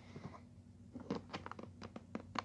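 Hands handling a plastic blister-pack toy package: a few light clicks and crackles of the plastic, most of them in a quick cluster in the second half.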